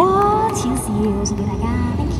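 A woman's voice amplified through a handheld microphone and small PA speaker, sliding up in pitch at the start and then holding a few short, wavering vocal sounds.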